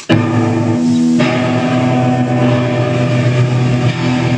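Amplified electric guitar: a loud chord struck suddenly and left to ring, then a second chord struck about a second in and held.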